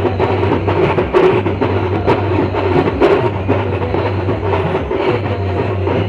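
Live Adivasi band music: an electronic keyboard playing over a steady drum beat, with the strongest hits about once a second.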